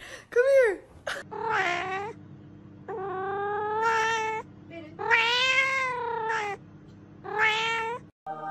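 A cat making four long, drawn-out meows that sound like "wow", each rising and then falling in pitch, over a steady low hum. Just before them, within the first second, comes a short, loud high-pitched call.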